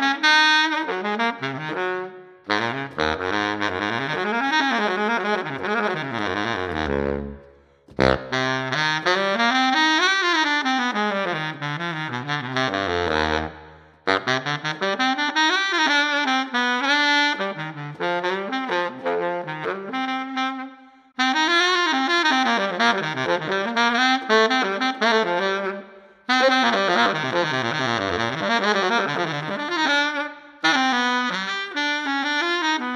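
Slavik Music Flames baritone saxophone played unaccompanied in quick melodic runs that climb and fall, in phrases of five or six seconds broken by short pauses for breath.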